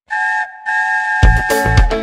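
A train whistle blows, a short blast and then a longer one, one steady high tone. About a second in, a cheerful children's song with a strong bass beat starts up under it and becomes the loudest sound.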